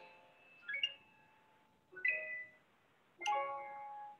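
Keyboard played slowly, heard over a video call: three separate notes or chords about a second apart, each ringing and fading out.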